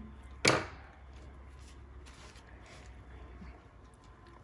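Small hand snips cutting a fabric flap on a book page: one short, crisp snip about half a second in, followed by faint handling sounds of the fabric.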